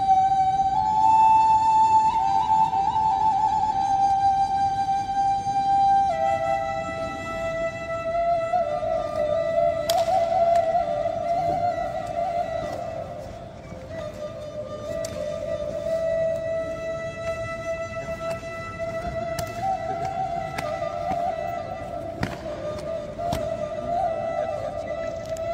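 A wind instrument playing a slow melody in long held notes that slide gently from one pitch to the next, with a few sharp knocks about ten seconds in and again near the end.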